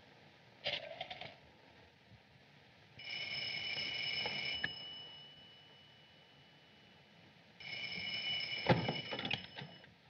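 Old electric telephone bell ringing twice, each ring under about two and a half seconds with a steady metallic jangle; the call is answered right after. A sharp knock sounds during the second ring.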